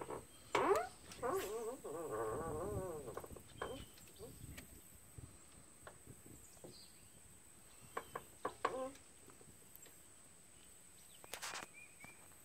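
Insects making a steady high-pitched drone, with a drawn-out voiced call lasting a couple of seconds near the start and a few brief faint calls later on.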